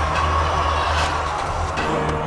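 A steady low rumble under a held higher tone, with a few faint ticks, in a film soundtrack.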